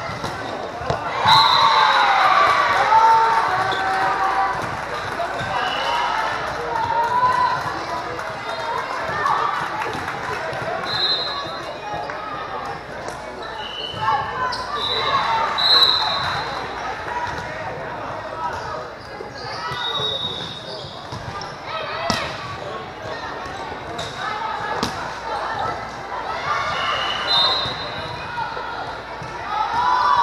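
Indoor volleyball play in a large, echoing sports hall: scattered sharp ball hits and bounces, with players and spectators calling out and several brief high-pitched squeaks.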